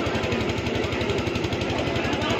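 A small engine running steadily, with a fast, even low thudding, under a faint murmur of the crowd.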